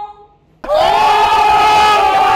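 A crowd of young men yelling one long, held shout in unison, cutting in suddenly just over half a second in. Before it, a woman's muffled voice trails off, falling in pitch.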